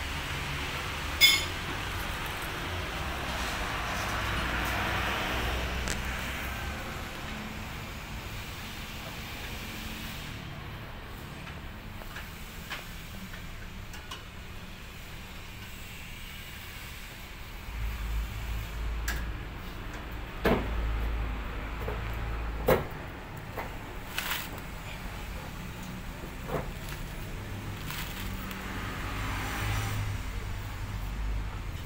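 Low rumble of a vehicle engine in the background that swells twice, with a few sharp knocks scattered through, the loudest about a second in.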